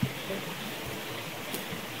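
Steady outdoor background hiss in a pause between speech, with no distinct sound event apart from a faint tick about a second and a half in.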